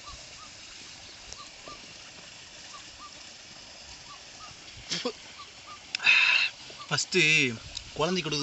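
Quiet outdoor background with a faint bird chirping over and over, about twice a second. Near the end come two short, loud, noisy sounds about a second apart, the second running into a man's voice.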